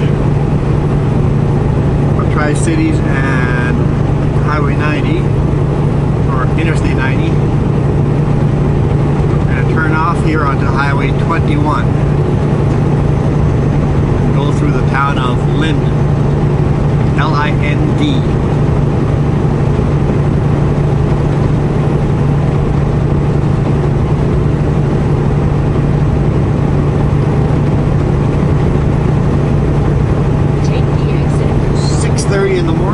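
Semi-truck engine and road noise droning steadily inside the cab at highway speed, with a constant low hum. Short snatches of an indistinct voice come and go in the first half.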